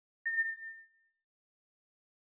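A single notification-bell ding sound effect: one clear, high tone struck about a quarter second in, ringing out and fading within about a second.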